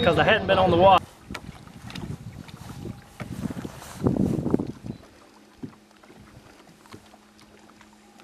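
A man's voice for about a second, then faint outdoor noise with a louder swell about four seconds in. From about five seconds a faint, steady hum sets in: the electric bow-mounted trolling motor of a bass boat.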